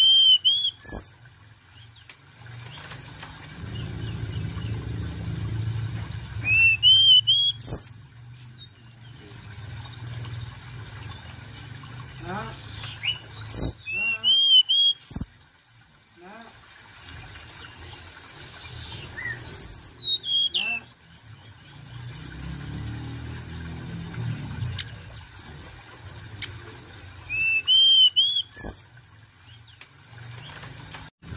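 Hill blue flycatcher singing in a cage: five short, loud phrases of clear whistled notes that sweep up and down, roughly every six to seven seconds, with fainter twittering between them. A low rumble comes twice between the phrases.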